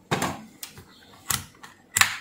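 A handful of sharp, irregular clicks, the loudest at the end: a Fluke 179 multimeter's rotary selector dial being turned through its detents.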